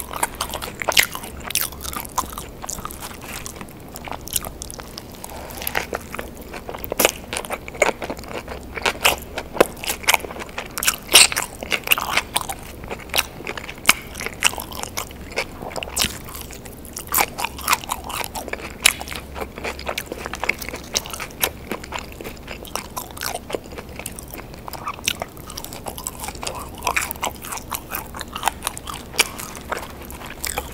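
A person eating a cheeseburger and French fries, close-miked for ASMR: biting, crunching and chewing, with many irregular crisp crackles throughout.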